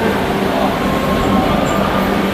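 Steady loud din of indistinct voices and background noise in a crowded room, with a low steady hum underneath.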